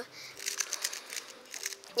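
Plastic 3x3 Rubik's cube being twisted by hand to scramble it: a quick, irregular run of light clicks and rattles from the turning layers.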